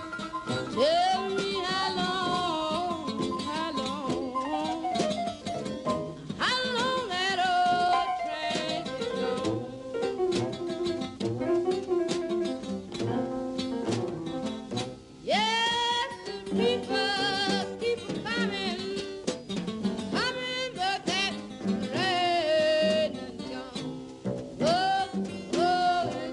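A blues song: a woman sings four long, wavering phrases without clear words, each scooping up into its note, over plucked guitar accompaniment.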